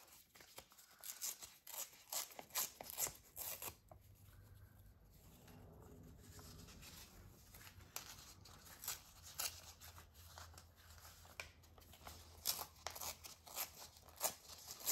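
Paper pages being torn by hand in short, faint rips, with light rustling as the sheets are handled; quieter for a few seconds in the middle.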